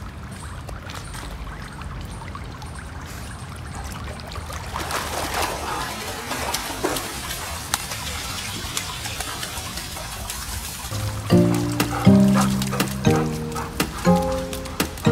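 Pool water sloshing and splashing as a swimming golden retriever paddles and then hauls himself out over the pool edge, the splashing and trickling busiest from about five seconds in. Background music with distinct notes comes in about eleven seconds in and is the loudest thing near the end.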